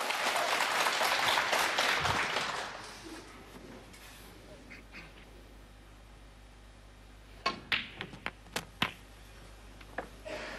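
Crowd applause dying away over the first few seconds. Near the end comes a quick run of sharp clicks as a snooker cue strikes the cue ball and the cue ball knocks the blue into a pocket.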